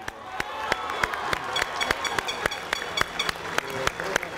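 An audience applauding, with many sharp, irregular individual claps and some crowd voices underneath, swelling over the first second as a piece of music ends.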